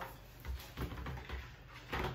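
A high chair's plastic tray being handled and lowered onto the chair, giving a few soft knocks and light rattles.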